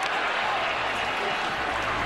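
Large stadium crowd making a steady wash of cheering and noise.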